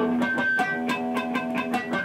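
Electric guitar strings picked one after another, about five a second, while lightly touched above the eighth fret: thin, weak natural harmonics ring over one another.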